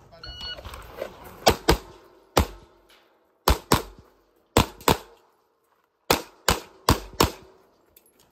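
Shot timer start beep, then a pistol fired about eleven times, mostly in quick pairs, across a competition stage.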